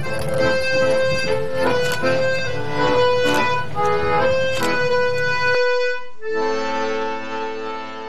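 Background accordion music that breaks off about halfway through, then one final held chord that fades away at the end.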